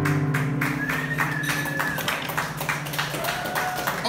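A small audience clapping, with a couple of whistles, as the final keyboard chord fades out about halfway through.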